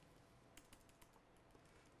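Faint typing on a laptop keyboard, a scatter of soft key clicks.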